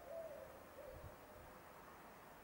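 Faint, low hooting bird calls: a few short notes in the first second, not the robin's high song.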